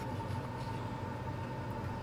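Steady background hum and hiss with a faint high whine, unchanging throughout, with no distinct knocks or clicks.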